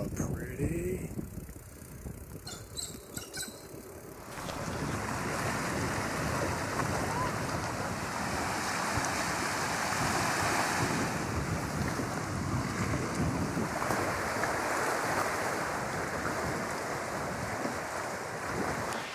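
Steady rushing noise of a breeze on the microphone, starting about four seconds in after a quieter stretch with a few light clicks.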